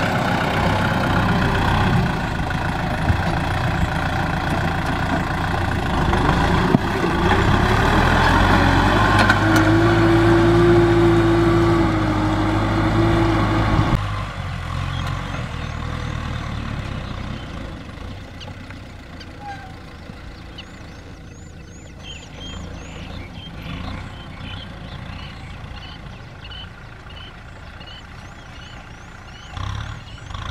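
Kubota M6040SU tractor's four-cylinder diesel engine running steadily under load while pulling a disc plough through dry soil. About halfway through the sound drops suddenly to a quieter engine, and birds chirp repeatedly over it near the end.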